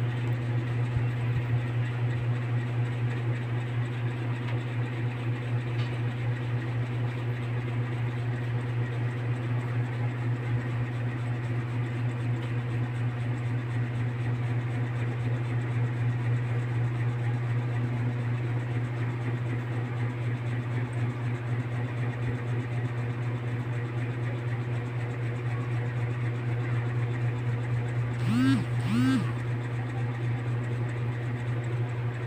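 LPG gas stove burner running on a low flame under a covered aluminium rice pot, a steady low hum that does not change. Near the end come two short voice sounds about half a second apart.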